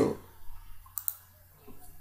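A single computer mouse button click about a second in, clicking a link in a web browser.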